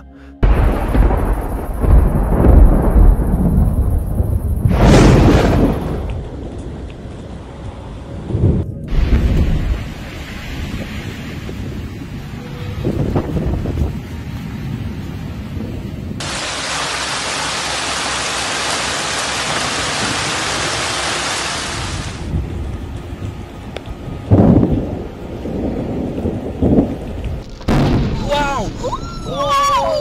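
Violent thunderstorm: loud, deep rumbles of thunder and storm wind with several sudden peaks, then a steady hiss of heavy rain for several seconds, and more thunder rumbles near the end.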